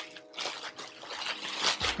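Clear plastic packaging bag crinkling and rustling as it is handled, in an irregular run of crackles.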